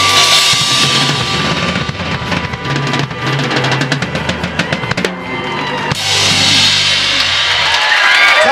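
A live band playing, with the drum kit loudest: kick, snare and cymbals under steady bass notes and a held high note. The music stops just before the end as the song finishes.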